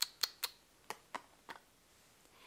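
Pretend eating of a toy ear of corn: a quick run of light clicks, about four a second at first, thinning out and stopping a little past halfway.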